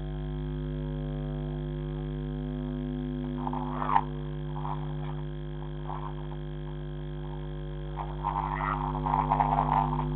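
Steady low electrical hum, a mains buzz picked up by a security camera's microphone. Over it come a few brief unidentified noises with a sharp click about four seconds in, and a busier patch of short noises in the last two seconds.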